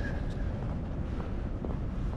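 Wind buffeting the camera microphone: a steady low rumble with a hiss above it.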